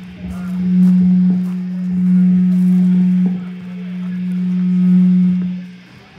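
Amplified electric guitar holding one sustained low note. It swells louder and softer three times, then cuts off just before the end.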